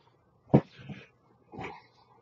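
A man's two short, sharp non-speech vocal sounds, like coughs or huffs, about a second apart; the first is the louder.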